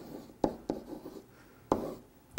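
Marker writing on a whiteboard: a few short, scratchy strokes with quiet gaps between them.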